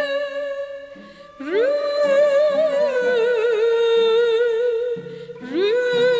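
A woman singing a Turkish classical beste in makam Sûzidil, drawing out long melismatic notes with wide vibrato over a lower instrumental accompaniment. Her held note fades about a second in; she re-enters with an upward slide at about one and a half seconds, and again with a slide near the end.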